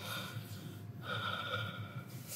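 Faint breathing near a microphone, two breaths through the nose with a slight whistle, over a steady low electrical hum.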